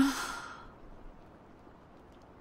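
A woman's short sigh: a brief voiced note at the very start that trails off into breath over about half a second.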